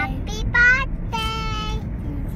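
A young child singing high, sustained notes, the last one held steady for most of a second, over the steady low rumble of road and engine noise inside a moving car.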